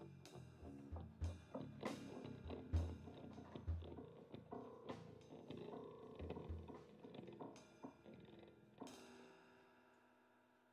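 Jazz trio of grand piano, electric guitar and drum kit playing the closing bars of a tune, with cymbals and low drum hits under piano and guitar. A last chord comes about nine seconds in and rings out, fading away.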